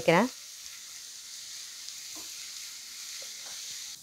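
Chopped onions, green chillies and curry leaves sizzling steadily in a hot pan as they are sautéed.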